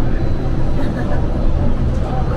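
Steady low rumble of an automated airport people-mover train heard from inside the car as it runs along its guideway, with faint voices.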